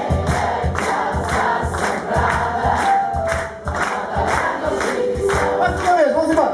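Live small jazz band (piano, saxophone, bass and drums) playing with a steady beat, with many voices singing along.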